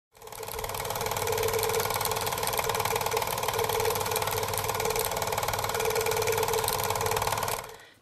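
Film projector running: a rapid, even mechanical clatter over a steady motor hum. It fades in over the first second and fades out near the end.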